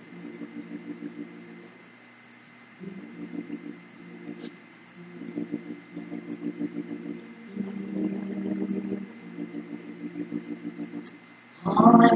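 Electric keyboard chords with a fast tremolo pulse, played in short phrases with brief gaps as a song introduction. A woman starts singing just before the end.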